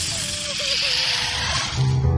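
Cartoon soundtrack: a steady hiss with a short wavering, voice-like sound over it, then dramatic music with sustained low notes starts just before the end.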